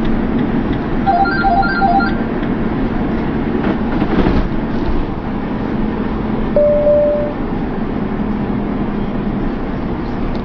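Road and engine noise inside a motorhome cab at motorway speed, a loud steady rumble with a constant low drone. About a second in there is a quick run of short electronic beeps, and a single longer beep comes a little after halfway.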